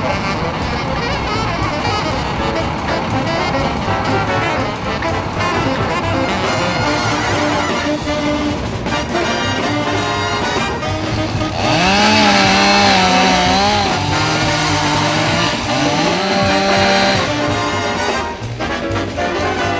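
Instrumental background music led by brass. In the second half a low brass line holds wavering notes, steps down, then slides up to a new note.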